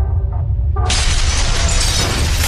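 Cinematic sound effects: a deep steady rumble under faint musical tones, then a sudden loud crash about a second in that carries on as a crackling rush of noise over the rumble.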